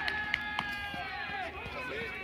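Several voices shouting and calling out across an open rugby pitch, overlapping and fading after about a second and a half, with two sharp clicks early on.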